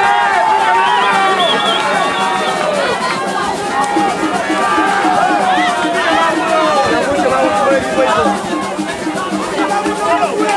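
Boxing spectators shouting and calling out over each other, many voices at once, with music playing underneath.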